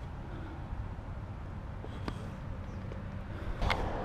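Steady low outdoor background rumble, with a couple of faint ticks about two seconds in and near the end.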